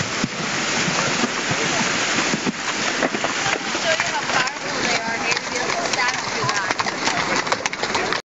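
Horses wading through a shallow, fast creek: a steady rush and splash of water, with short knocks of hooves that come more often in the second half as the horses step out onto the gravel.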